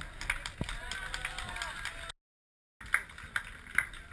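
Scattered hand claps, a sharp clap about every half second in the second half, over faint crowd chatter, broken by a brief total silence a little after two seconds.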